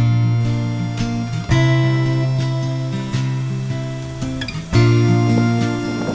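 Background music of acoustic guitar chords, each struck and left to ring and fade. New chords come in about a second and a half in and again near five seconds.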